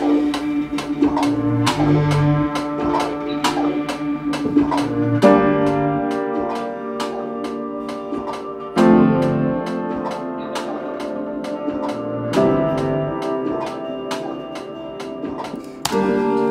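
Upright piano playing slow sustained chords that change about every three and a half seconds, over a playback beat with a steady tick about four times a second.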